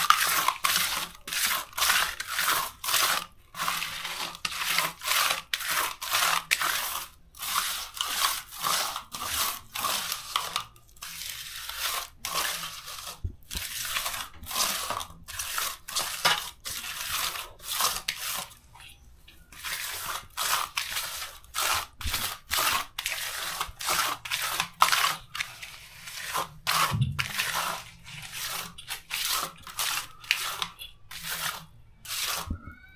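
Gritty mud mix of anthill soil, grass and sawdust being worked, heard as repeated scraping, crunching strokes, a few a second with short pauses.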